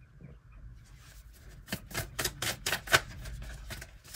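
A deck of oracle cards being shuffled by hand: a quick, irregular run of sharp card clicks and snaps starting about a second in, loudest near the end.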